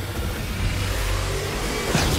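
Film-trailer sound effects for a monster's heat-vision blast: a loud, steady deep rumble under a dense roaring rush of noise.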